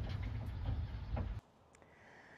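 Wind buffeting the microphone outdoors, a steady low rumble with a light hiss above it, which cuts off suddenly about a second and a half in, leaving near silence.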